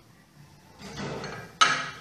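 Handling noise from a hand moving over a small metal RF load resting on a stone countertop. A soft rustle is followed by a sudden knock-like sound about a second and a half in.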